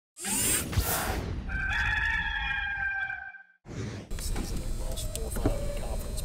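Intro sound effect: a rush of noise, then a long rooster crow. After a brief break to silence, steady background noise with scattered small clicks follows.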